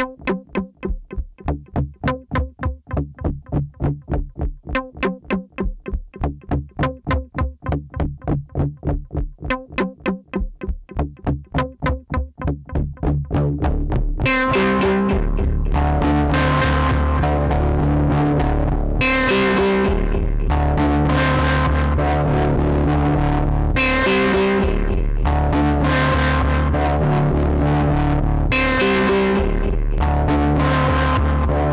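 Pioneer DJ Toraiz AS-1 analog synthesizer playing a bass-heavy sequenced pattern, run through an Elektron Analog Heat. For about the first half it plays short staccato notes, several a second. Then the notes lengthen into a continuous line, with a bright filter sweep opening every few seconds.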